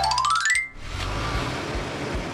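Cartoon sound effects over background music: a quick rising whistle-like glide in the first half second, then a steady rumbling vehicle sound as the animated cement mixer truck drives off.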